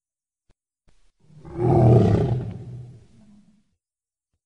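A dinosaur roar sound effect: one long, low roar that starts about a second in, peaks quickly and fades away over about two seconds.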